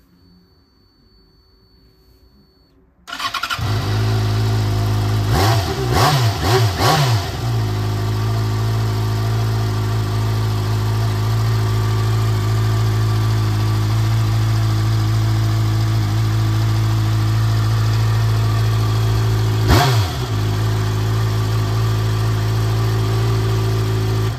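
A 2014 Yamaha XJ6's 600cc four-cylinder engine starts about three seconds in and settles into a steady idle through its stock exhaust. A few quick throttle blips come shortly after it starts, and one more near the end.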